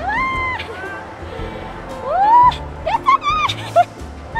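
Excited high-pitched exclamations from riders on a spinning cup ride: a drawn-out "wah" at the start and a rising "woo" about two seconds in, then short squeals, over background amusement-park music.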